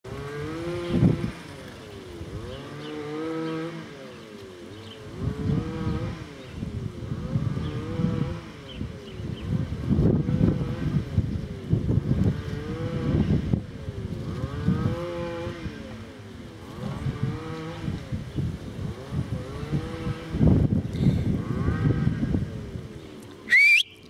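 Metal garden swing creaking as it rocks back and forth, a rising-and-falling squeal about every second and a half. A short, sharp rising call comes just before the end.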